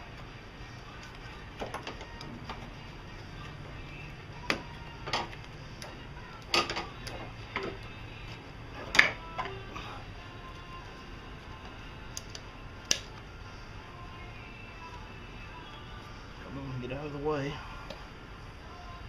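Power steering pump being worked loose from its mounting bracket in an engine bay: scattered sharp clicks and knocks of metal parts, the loudest about halfway through. A short grunt of effort near the end.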